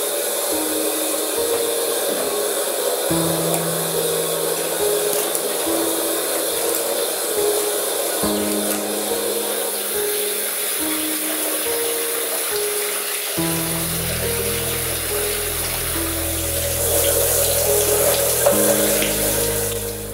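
Shower water spraying in a steady hiss under background music: a slow tune of held notes, with a low bass part coming in about two-thirds of the way through.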